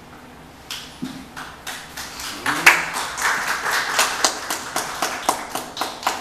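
Applause: a few scattered hand claps about a second in, building into steady clapping from about two and a half seconds.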